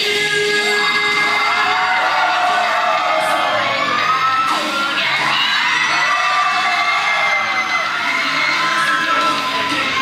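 A hard-rock song playing loudly over the hall's speakers during an instrumental passage, with the audience shouting and cheering over it.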